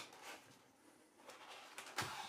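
Faint scratching and light clicks of hands handling a small cardboard box, with a small click at the end.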